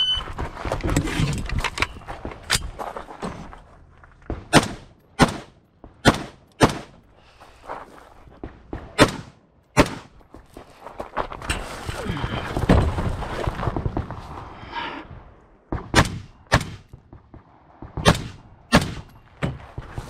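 A shot-timer start beep, then a competitor's rifle shots, about a dozen of them, sharp singles and quick pairs with a long pause in the middle. Between shots the competitor's gear rattles and rustles as they move and handle the rifle.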